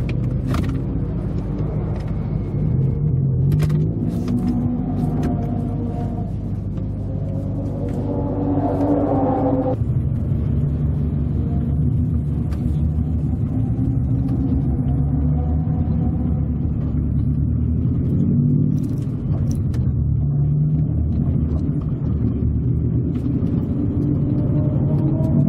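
Subaru Impreza WRX (GDA) turbocharged flat-four, heard from inside the cabin at low speed. The engine note climbs as it revs through a gear and cuts off sharply about ten seconds in, then rumbles low and begins to rise again near the end.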